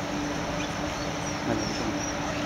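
Steady mechanical hum with one continuous low tone, typical of the blower fans that keep an air-supported sports dome inflated. A brief, slightly louder sound rises out of it about one and a half seconds in.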